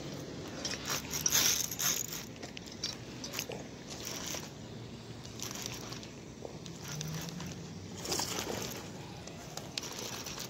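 Irregular crackling and scraping handling noise from hands working a baitcasting rod and reel close to the microphone, in short uneven bursts.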